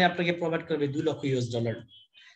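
Speech only: a voice narrating, breaking off shortly before the end.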